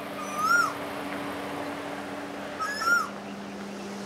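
Two short animal calls, each rising then falling in pitch, about two and a half seconds apart, over a steady low hum.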